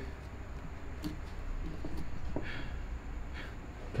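Quiet workshop room tone: a steady low hum with a few faint clicks and a faint, muffled murmur of voices.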